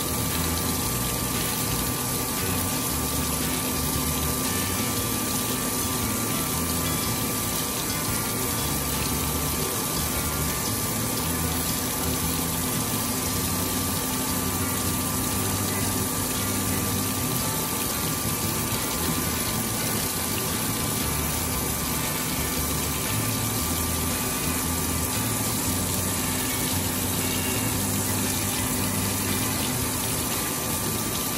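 Cylindrical grinder running on a slender steel shaft under a flood of coolant: the coolant splashes steadily over the work and wheel, with a constant machine hum and a faint steady whine underneath.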